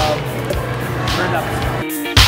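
Background music with held notes over indistinct voices, switching near the end to a louder track with a steady beat.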